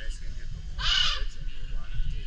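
A macaw giving one loud, harsh squawk about half a second long in the middle.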